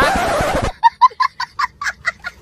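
A short hiss of noise, then a fast run of short clucking calls, about six a second, like a turkey gobbling.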